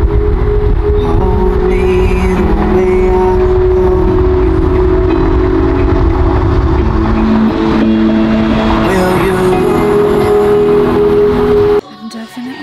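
Wind buffeting into a moving car through an open window at highway speed, a loud low rumble, with music playing over it in held notes that change every few seconds. Both start and stop abruptly.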